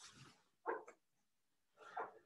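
Whiteboard eraser wiping the board in three short, faint strokes.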